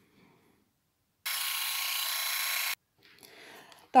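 Electric manicure handpiece (Vitek VT-2216) running for about a second and a half: a steady whirr that starts and cuts off abruptly.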